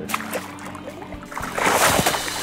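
A tarpon released at the side of a boat thrashes at the surface, making a loud splash about one and a half seconds in. Background music plays throughout.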